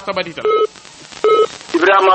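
Two short telephone beeps about 0.8 s apart, like keypad tones heard over the phone line, with talk before and after.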